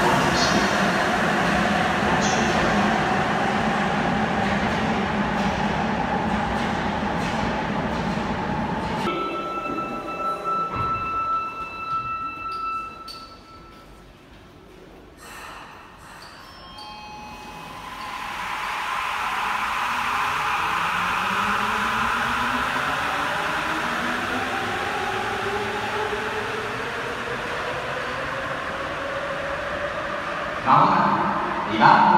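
Rubber-tyred Sapporo subway train pulling away into the tunnel, a loud steady running rumble that cuts off abruptly about nine seconds in. After a quiet stretch with a few faint steady tones, another train's running sound builds from a little past halfway, its motor whine rising slowly in pitch as it gathers speed.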